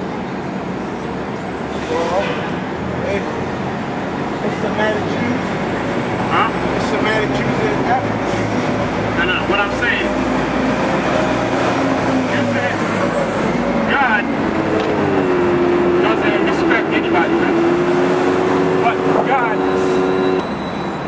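Busy city-street traffic with a bus close by: a low engine rumble, a thin high whine that comes in about a third of the way through and drops away just past the middle, then a steady engine hum in the last few seconds.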